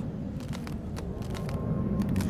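A steady low rumble, with a few faint clicks and a faint high steady tone that comes in about halfway through.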